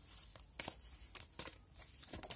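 Tarot cards being shuffled by hand: a few faint, soft papery flicks and slaps of the cards against each other.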